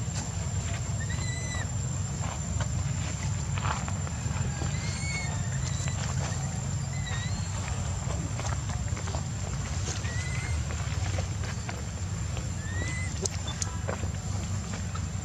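Infant long-tailed macaque crying: five short, high calls spaced a few seconds apart, each a quick rise and fall in pitch, over a steady low rumble.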